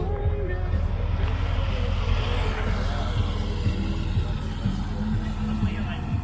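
A car engine running with a steady low rumble, and faint voices in the background.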